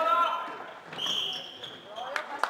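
A short, steady referee's whistle blast about a second in, after a brief shout from players on court.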